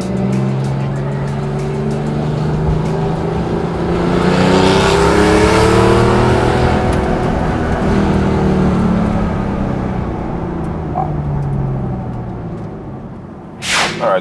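Supercharged air-cooled flat-six of a 1995 Porsche 911 (993) pulling under acceleration. Its pitch rises to a peak about five seconds in, then falls away gradually as it eases off.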